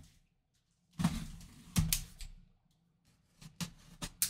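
Seals being cut and a cardboard box being opened by hand: a short rustling scrape about a second in, a sharp click just before two seconds, and a few lighter clicks near the end.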